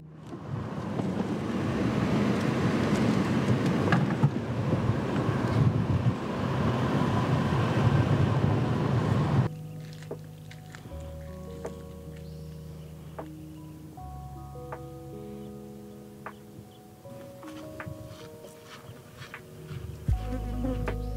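Steady road and engine noise heard from inside a moving car, cutting off abruptly about halfway through. Soft background music of slow, held notes follows.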